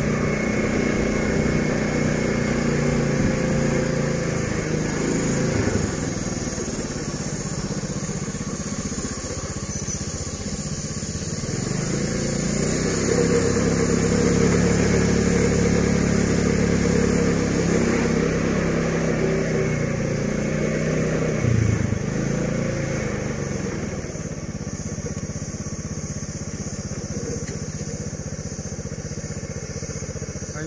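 Small motorbike engine running as it rides along a lane, its pitch dropping and climbing again several times as it slows and picks up speed, with a sharp dip about two-thirds of the way through.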